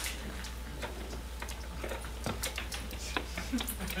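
Scattered clicks and knocks of a microphone being handled and plugged in, over a steady low electrical hum from the PA.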